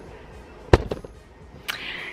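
A single sharp knock about three quarters of a second in, then a fainter click near the end. It fits the camera being set down on the kitchen counter.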